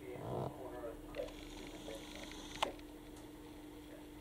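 Faint, steady electrical hum, with a single sharp click about two and a half seconds in.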